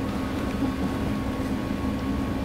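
Steady low hum and rumble of a theatre hall's room tone, with a faint steady whine above it.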